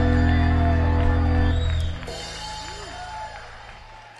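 A live band holds its final chord with bass, guitar and keyboard, then cuts off about halfway through, leaving a much quieter ringing tail.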